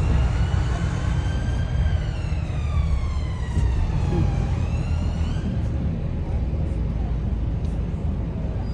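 Volvo B9TL double-decker bus running, heard from inside, with a steady low rumble. Over it, a high whine rises in pitch for about two seconds, falls slowly, then rises steeply again about five seconds in and fades.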